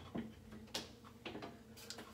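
A few faint, separate clicks and knocks, about four in two seconds, of small toiletry items being picked up and set down.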